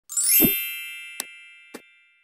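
Intro logo sound effect: a quick rising shimmer that lands on a low thud and a bright bell-like chime, which rings on and slowly fades. Two short clicks sound during the fade.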